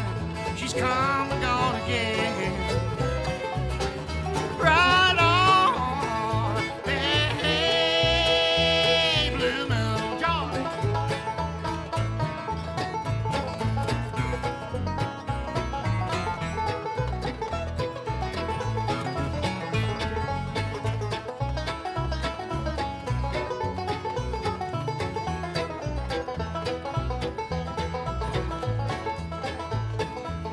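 Bluegrass band playing an instrumental break: a wavering, held melody line for roughly the first ten seconds, then a five-string banjo picking fast rolls over acoustic guitar and upright bass.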